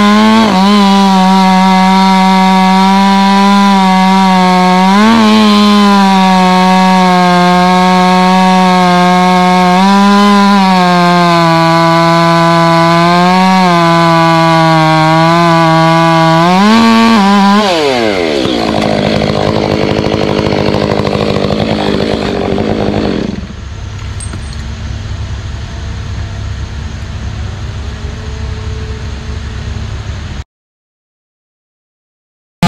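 Chainsaw running at full throttle through a tree trunk, its pitch steady with a few brief rises. About 17 seconds in the engine winds down as the cut is finished, and a quieter, rougher running sound follows, dropping again about six seconds later.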